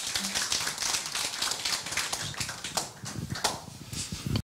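Audience applauding in a hall, dense at first and thinning to scattered claps near the end.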